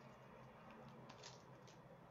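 Near silence: faint room hum, with a few soft ticks and rustles of paper templates being slid about on a board, about a second in and near the end.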